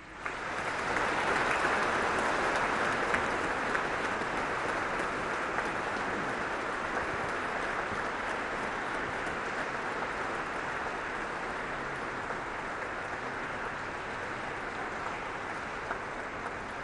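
Audience applauding: a long, even round of clapping that swells in the first second, holds steady and slowly eases off.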